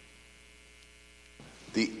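Faint steady electrical mains hum, a buzz of evenly spaced tones that cuts off suddenly about a second and a half in; a man's voice starts speaking just before the end.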